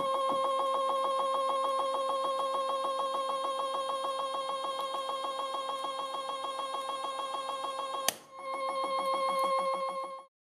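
Stepper-motor drive of a DIY universal test machine running at a steady pitch as it slowly pulls an M3 brass threaded insert out of a PLA sample. About eight seconds in a single sharp crack comes as the insert rips out, the motor sound dips briefly and then returns.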